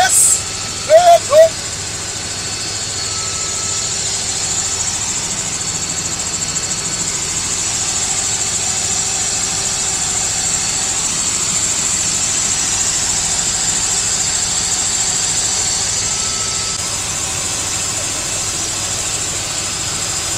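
Steady engine and rotor noise inside a small helicopter's cabin, with a strong high hiss, growing slightly louder a few seconds in. A brief voice comes near the start.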